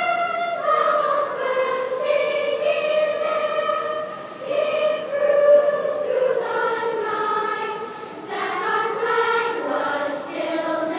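A public-school children's choir singing a national anthem in slow phrases of long held notes, with short breaks about four and eight seconds in.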